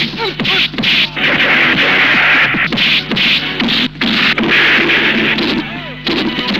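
Film fight-scene sound effects: a quick run of dubbed punch and hit impacts with noisy crashing stretches, over background music.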